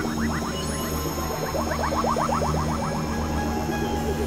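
Experimental electronic music: a steady low drone and high sustained tones under fast runs of short rising chirps, about eight a second. The chirps come once at the start and again from about one and a half seconds in.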